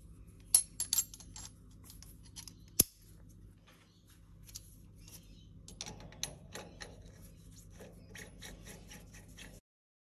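Small metal clicks and scrapes as an ER40 collet and its nut are handled and fitted onto a lathe's collet chuck, with a few sharp clicks early on and a quicker run of small ticks from about six seconds in. A steady low hum runs underneath.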